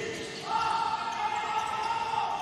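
Futsal ball being kicked and tapped on an indoor court, with faint knocks from the play. About half a second in, a steady held tone at two pitches starts and runs on; it is the loudest sound.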